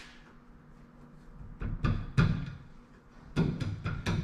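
A handful of sharp metal knocks and clinks from a tubular lower control arm and its mounting bolts being worked into the K-member brackets. It is quiet for over a second, then the knocks come in two groups, the loudest about halfway through.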